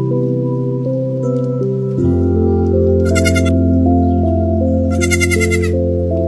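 Young goat kid bleating twice, a short high wavering call about three seconds in and a longer one about five seconds in, over background music.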